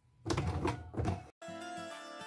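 A domestic electric sewing machine stitching through fleece in short, uneven runs, stopping abruptly a little over a second in; light instrumental background music then begins.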